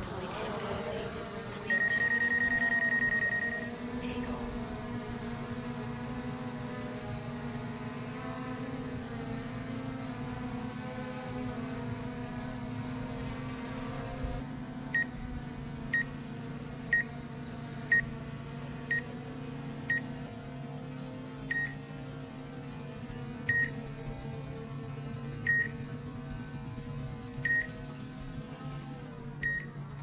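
DJI Mavic Air 2 quadcopter's propellers humming steadily as it lifts off and flies. A long electronic beep comes about two seconds in, and from halfway through there are short beeps about once a second, spacing out to about every two seconds.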